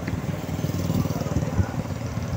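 A small motorcycle engine running with a rapid putter as road traffic passes, growing louder through the first second and a half.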